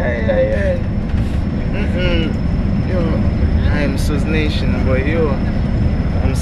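Steady low rumble of a coach bus's engine and road noise inside the passenger cabin, with voices laughing and talking over it.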